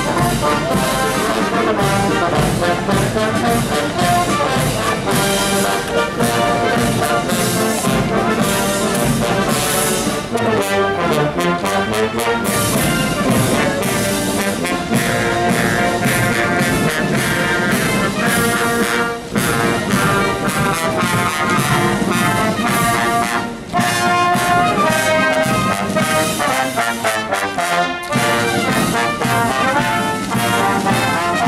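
A British Foot Guards military band playing a march on brass (trombones, trumpets, tubas) with drums.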